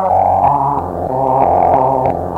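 Electronic dance music from a DJ mix: sustained synthesizer chords over a bass line that steps between notes, with faint percussive clicks.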